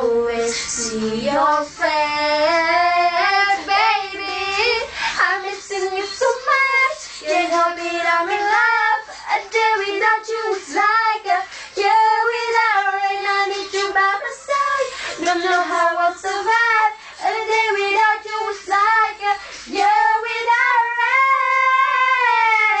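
Young female voices singing a pop song's melody, with long held notes and pitch glides.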